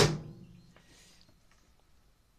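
A single sharp knock of a hard object on a hard surface, ringing briefly and dying away within about half a second.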